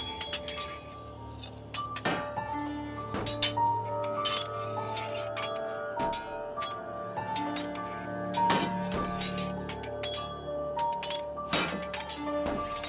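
Sword blades clashing in sparring: a dozen or so sharp metallic clinks at uneven intervals, over a background score of slow held notes.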